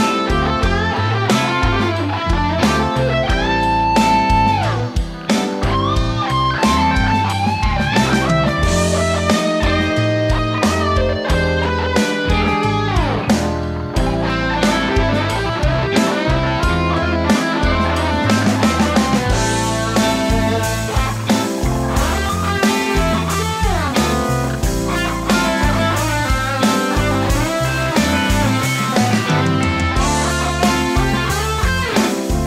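Overdriven electric guitar from a Les Paul-style guitar playing a 12-bar blues solo over a backing jam track, through Marshall-voiced drive pedals into a clean, Fender-like amp. Lines of single notes with string bends and long held notes.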